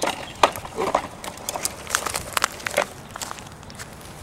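A plastic toddler push-walker toy clattering over a concrete sidewalk as it is pushed: a run of irregular sharp clicks and clacks that stops about three seconds in.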